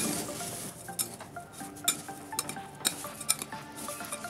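A metal spoon gently stirring a bhel puri mix of sev mamra, Bombay mix, potato cubes, onion and tomato in a glass bowl, with scattered light clinks and scrapes against the glass.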